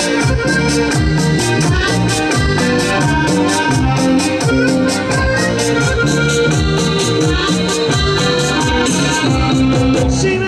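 Live band playing an instrumental passage: an electronic keyboard with an organ sound carries the melody over electric bass and drums keeping a steady beat.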